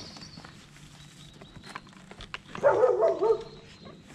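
A dog barking: a short, loud burst of a few barks about two and a half seconds in, over scattered light clicks and knocks.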